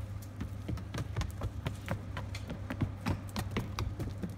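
A sheep's hooves clicking and tapping irregularly on the hard floor of its pen as it paces about.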